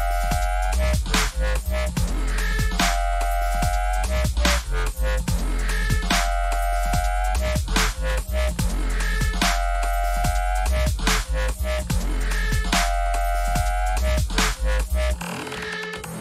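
Classic dubstep played through DJ decks: heavy sub-bass and drums under a synth riff that repeats about every two seconds. The sub-bass drops out about a second before the end.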